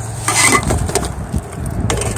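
Handling noise of a clutch disc being lifted off a flywheel in a cardboard box: rough rustling and scraping with irregular small clicks, and a sharp click near the end.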